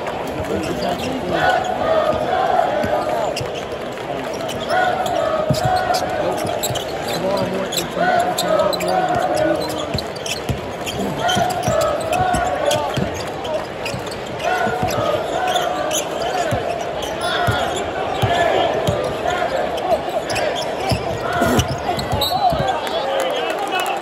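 A basketball bouncing on the court during live play, a scatter of short knocks, under indistinct voices and shouts in a large arena.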